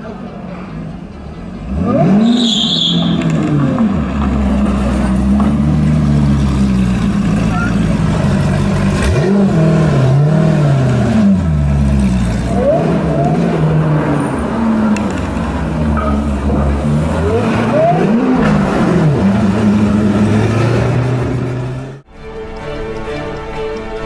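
Hennessey Venom GT's twin-turbo V8 revving, loud, its pitch sweeping up and down several times. The engine gets much louder about two seconds in.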